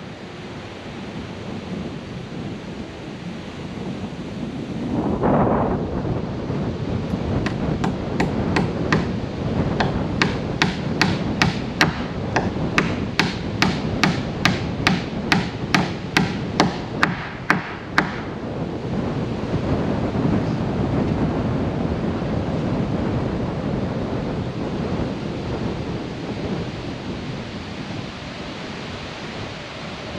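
A hammer nailing wooden siding boards: a steady run of sharp strikes, about two to three a second, for roughly ten seconds in the middle. Heavy wind noise rumbles on the microphone throughout.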